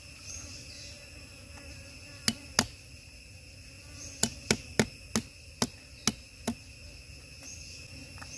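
A cleaver striking a chopping board in nine sharp knocks: two a few tenths of a second apart, then a run of seven about every half second. Crickets and other insects chirr steadily behind.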